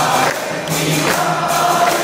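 Aarti hymn sung by a group of voices, over a steady low drone and a regular beat of struck percussion, about two strikes a second.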